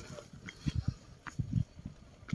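Footsteps climbing stone steps, heard as a series of low, irregular thuds with a few faint clicks.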